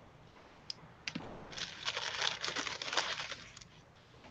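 A faint click, then about two and a half seconds of paper rustling and crinkling as stiff art-journal pages are handled and one is lifted from the stack.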